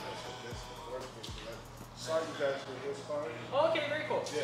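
Men's voices talking and exclaiming, louder in the second half, over background music. Two short low thuds come in the first second and a half.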